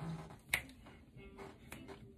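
Two sharp clicks about a second apart, the first much louder, as a tight-fitting clear plastic aligner tray is snapped off the teeth. Faint music plays in the background.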